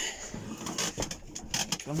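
A plywood bed base being pulled out on drawer slides: a rough, uneven scraping with several knocks, the runners a bit stiff from use.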